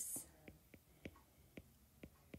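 Faint, irregular clicks of a stylus tapping on a tablet's glass screen during handwriting, a few per second.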